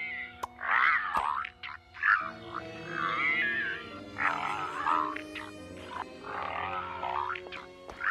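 Repeated wavering vocal groans from a cartoon voice, about five of them, each under a second long, over soft sustained background music that comes in about two seconds in.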